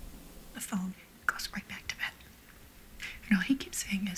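Hushed, whispered dialogue in short broken phrases, with strong hissing consonants and a pause of about a second in the middle.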